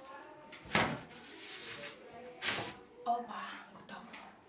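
A cloth-wrapped loaf pushed up onto the top of a wooden wardrobe: two short bursts of cloth rustling and knocking against the wardrobe, about a second in and again past halfway, with faint voices between.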